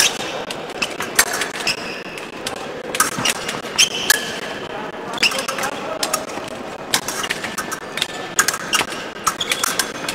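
Fencers' footwork on the piste: shoe soles squeaking briefly several times, with many sharp taps and knocks of feet advancing and retreating.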